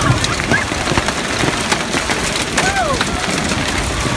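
Hail falling hard onto the pavement, parked cars and the umbrella overhead: a dense, steady clatter full of sharp ticks.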